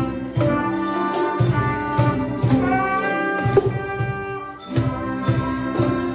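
A school class ensemble playing a tune together: held melody notes over regular percussion hits, with a brief dip about two-thirds of the way through.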